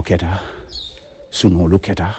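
A man's voice in two drawn-out spoken phrases, low-pitched, part of Arabic Quranic recitation. A brief high chirp comes between them.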